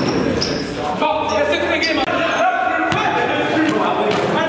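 A basketball bouncing on a hardwood gym floor, with a few sharp thuds, amid players' voices shouting and echoing in the hall.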